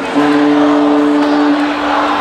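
Live rock band holding a steady sustained chord that dies away near the end, heard from far back in a festival crowd with crowd noise underneath.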